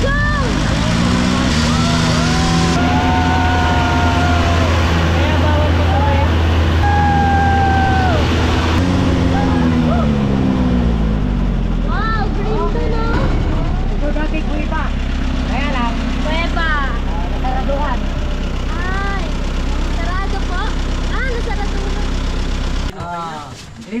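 Engine of an open-top jeep-type utility vehicle running as it drives over a gravel riverbank, its revs rising and falling a few times. The engine cuts off suddenly about a second before the end as the vehicle stops.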